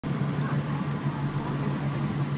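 Road noise inside a moving vehicle on a highway: a steady low drone of engine and tyres.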